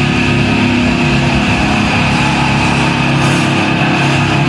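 Live rock band playing loud: distorted electric guitar and bass hold a steady, sustained wall of sound, with few drum hits.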